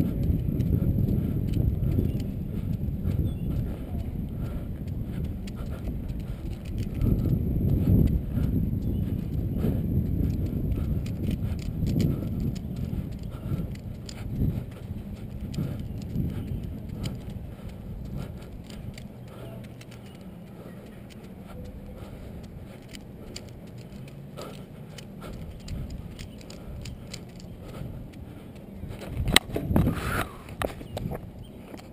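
Low wind and road rumble on the microphone from riding a unicycle over asphalt, stronger in the first half and easing later, with scattered light clicks from the Rubik's cube being turned and the beanbags being caught. A cluster of louder knocks comes near the end.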